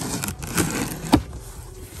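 Packing tape ripping and cardboard box flaps being torn open, with a sharp crack about a second in, the loudest moment.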